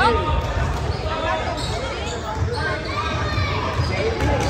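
Basketball being dribbled on a hardwood gym floor during a game, with spectators' voices in the large hall.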